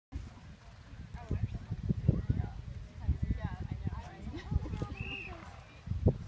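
Indistinct voices of people talking at a distance, over irregular low thuds and rumble.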